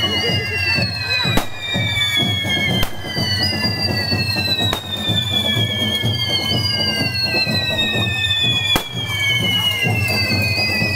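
Handheld firework fountains at close range: several overlapping whistles, each sliding slowly down in pitch over a few seconds before a new one starts, with four sharp bangs scattered through.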